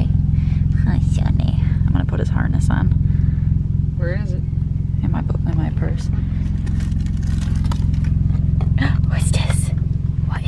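A car engine idling steadily, heard from inside the cabin, with rustling and handling noises as a dog's mesh harness is worked on over it.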